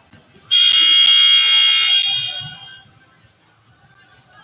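Gym scoreboard buzzer sounding once: a loud, steady, buzzing tone that starts suddenly about half a second in, holds for about a second and a half, then dies away in the hall's echo.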